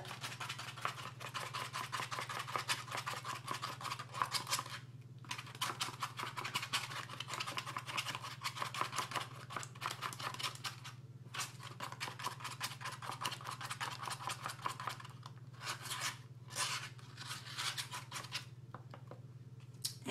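A plastic spoon stirring a creamy hair-conditioner mix with oil and honey in a styrofoam cup: rapid scraping strokes against the foam, stopping briefly three or four times.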